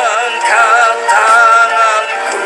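A man singing a slow worship song into a microphone, holding long notes with a wavering vibrato.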